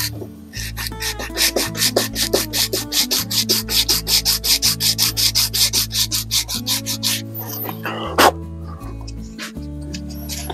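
Hand sanding: sandpaper wrapped around a socket rubbed back and forth along the curved edge of a wooden rifle stock, about four quick strokes a second, stopping about seven seconds in. Background music with held low notes plays under it.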